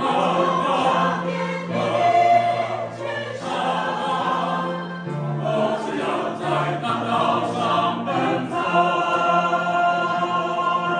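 Mixed choir of men's and women's voices singing a song in parts, holding notes that move to new pitches every second or so.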